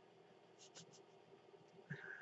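Near silence: room tone with a few faint soft ticks.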